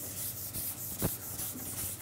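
Chalkboard duster rubbing across a chalkboard in repeated back-and-forth wiping strokes, erasing chalk drawings; a short sharper stroke about a second in.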